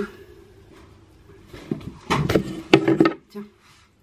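A few knocks and rustles of small objects being handled and moved, bunched about two to three seconds in.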